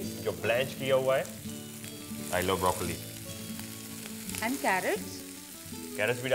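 Vegetables sizzling in a hot pan, with yellow zucchini just going in with garlic, ginger, lemongrass and bell peppers.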